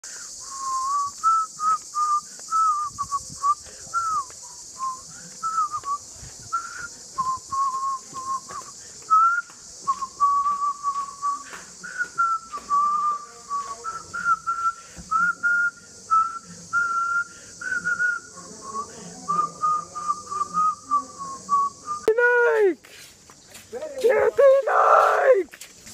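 A person whistling a tune: one clear note that wanders up and down in short phrases with brief breaks between them. A steady high-pitched hiss runs behind it and cuts off suddenly near the end.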